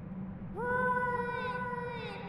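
A long, meow-like vocal cry from a cartoon character, starting about half a second in with a quick upward slide and then held on one steady pitch, over a low steady hum.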